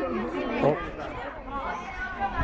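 Speech only: several young boys' voices chattering and calling out over one another.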